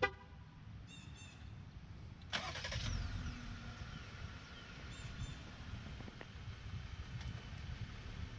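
A short horn chirp as the remote start is triggered, then about two seconds in the 3.6-litre Pentastar V6 of a 2018 Jeep Wrangler JL cranks, catches and settles into a steady idle.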